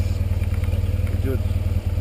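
Motorcycle engine idling steadily: an even, low rumble close to the microphone.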